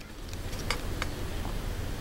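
A few faint clicks and handling sounds as a plastic GoPro thumb screw is turned into the frame's mounting buckle, over a low steady background rumble.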